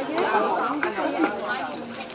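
Chatter of several people talking, with a few light clicks.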